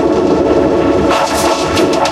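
Logo-jingle audio distorted by editing effects into a loud, dense crackling noise, with steady pitched tones held underneath.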